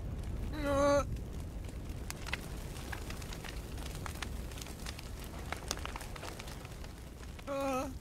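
Cartoon soundtrack: a low rumble with faint scattered crackles, broken by two short vocal sounds from a character, one about a second in and one near the end.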